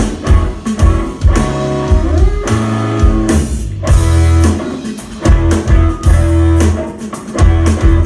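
Live rock band playing an instrumental passage: electric guitar notes over a drum kit, with hard drum hits punctuating it throughout.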